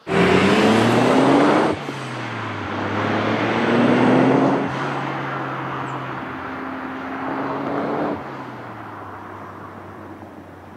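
Nissan R32 Skyline GT-R with an HKS 2.8-litre stroker straight-six accelerating hard. The engine note climbs through the revs, with upshifts about two, four and a half and eight seconds in, and is loudest at first, fading toward the end as the car pulls away.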